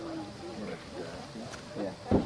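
Indistinct voices of people talking, not close to the microphone.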